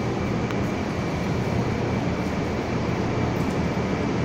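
Steady low rumble and hiss of a train approaching through the tunnel into an underground railway station, echoing under the platform roof.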